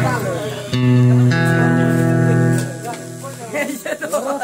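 Electronic keyboard holding steady sustained notes, moving to a new chord about a second and a half in and dying away before the end, with a voice heard briefly at the start and near the end.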